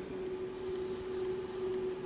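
A steady hum holding one pitch, with a soft hiss behind it.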